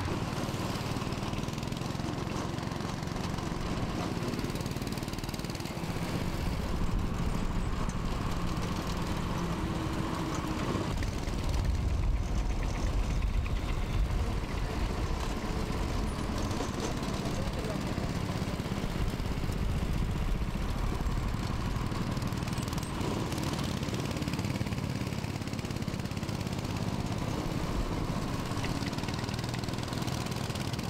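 Small petrol go-kart engines running on a track, their drone swelling and fading as karts pass, loudest about a dozen seconds in.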